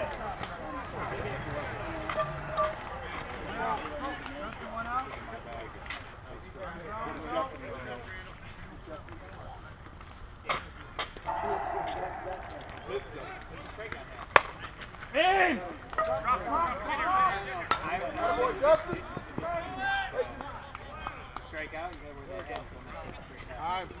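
Distant voices of softball players chattering across the field, with one sharp crack a little past the middle, the bat hitting the softball, followed at once by louder shouting.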